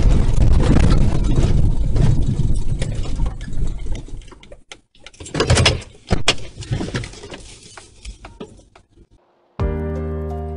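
Police car driving over rough grassy ground, heard from inside the cabin as a heavy low rumble that fades after about four seconds, followed by a couple of sharp knocks. Music starts near the end.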